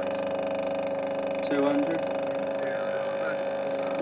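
A small subwoofer submerged in a bowl of water, driven hard with a steady tone, giving a constant buzzing hum at one unchanging pitch.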